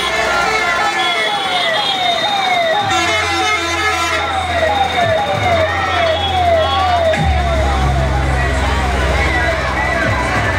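A siren-like wail sweeping in pitch about twice a second, over loud music with heavy bass from a sound system. The bass comes in about three seconds in and swells louder a little after seven seconds, as the wail fades.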